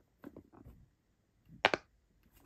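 Small silicone bubbles of a cube pop-it fidget toy being pressed: a few soft pops, then two sharp, louder pops close together near the end. The pops are small and quiet.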